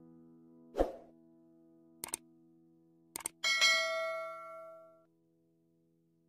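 Subscribe-button animation sound effect: a soft pop about a second in, two quick double clicks like a mouse, then a bright bell ding that rings out for about a second and a half. A faint held music note sounds underneath.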